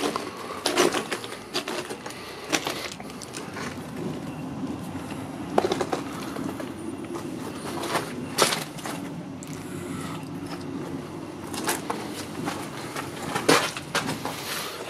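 Footsteps crunching on broken brick and concrete rubble, a sharp crunch every couple of seconds, over a steady low drone.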